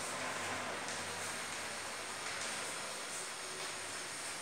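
Chalk writing on a blackboard: faint scratches and taps of the chalk stroking out letters, over a steady background hiss and low hum.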